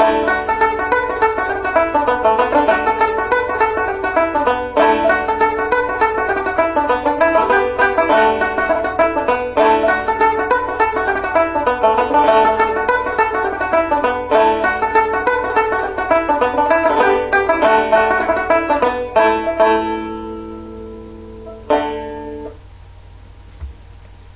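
Resonator banjo picked in a fast, steady run of plucked notes playing a fiddle-style tune. Near the end the run stops, a few notes ring on, and a final chord about 22 seconds in rings out and fades away.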